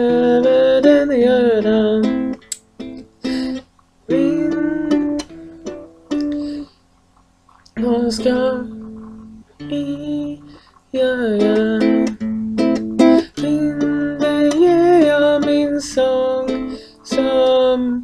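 Guitalele plucked and strummed in phrases broken by short pauses, with a woman's voice carrying a melody over it.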